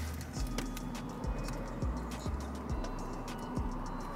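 Background music with a steady beat: deep bass notes and light ticking percussion, two to three ticks a second.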